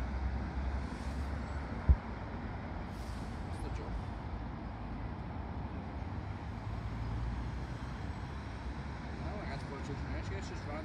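Steady low engine rumble in the distance, with one short sharp knock about two seconds in.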